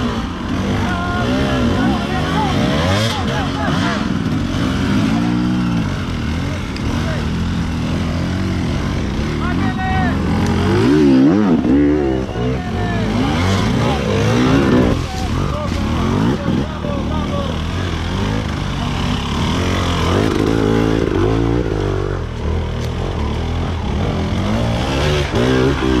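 Several enduro motorcycles revving hard and in bursts as they climb a steep slope, their engine pitch rising and falling again and again. Voices shout over the engines.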